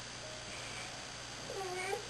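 A baby's short whiny cry about one and a half seconds in, its pitch dipping and then rising, over faint room tone.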